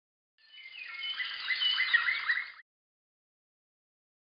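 Birds chirping, a dubbed-in sound effect of many quick high chirps that swells in over about a second and cuts off abruptly after about two seconds.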